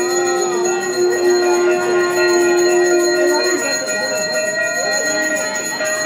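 Temple bells ringing continuously during aarti, several steady ringing tones held throughout, with many voices chanting or singing over them. A strong, steady low note is held under the bells and stops about three and a half seconds in.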